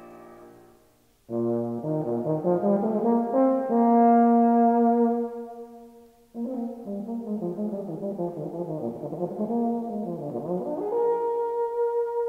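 Solo euphonium playing unaccompanied in a cadenza. As a piano chord dies away, it enters about a second in with a rising line to a long held note. It breaks off briefly, then plays running figures and settles on another held note near the end.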